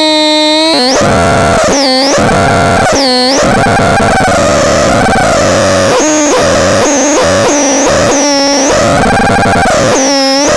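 Electronic noise box played live by turning its knobs: a loud, continuous distorted drone whose pitch keeps wavering, broken every second or so by sharp swoops where the tone dips and climbs back up.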